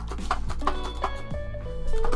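Biscuits in their packaging shifting and knocking inside a metal biscuit tin as it is shaken, several short knocks, over background music. The loose rattle is the sign of a tin only about half full.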